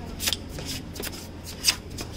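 A Saint Bernard puppy moving about on a stone-tiled floor with its nose down, making short, irregular scratchy sounds, the loudest near the end.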